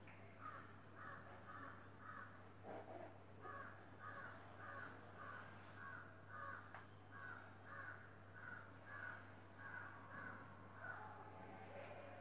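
Faint bird calls repeated in a long, even series of short notes, about two to three a second, over a steady low electrical hum.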